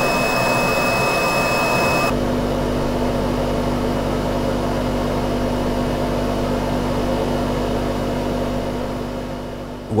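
FPZ K series side channel blower running with a steady high-pitched whistle. About two seconds in it cuts to an FPZ Evolution blower, whose impeller blades are unevenly spaced to mask the high frequencies: a more even rushing sound with a low hum and no whistle. The sound fades out near the end.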